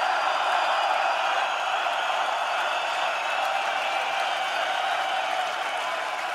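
A large concert crowd cheering and shouting, a steady unbroken wash of voices.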